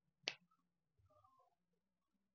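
A single short, sharp click about a quarter second in, otherwise near silence with faint room tone.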